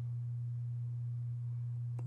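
Steady low electrical hum, a single unchanging tone like mains hum picked up in the microphone's recording chain.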